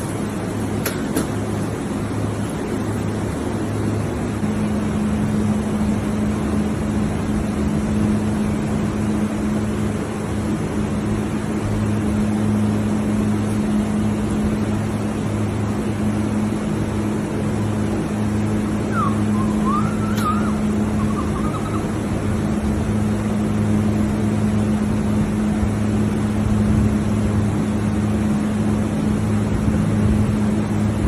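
A steady mechanical hum with a constant low drone that grows stronger about four seconds in. About nineteen seconds in comes a short, wavering whistling chirp.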